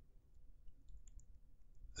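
Near silence in a pause between spoken phrases, with a few faint, short clicks.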